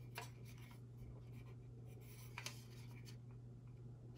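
Faint clicks and rubbing of a plastic model rocket assembly being turned over in the hands, with two sharper clicks just after the start and about two and a half seconds in, over a steady low hum.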